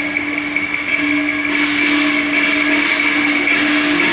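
Cantonese opera accompaniment holding one long, steady note.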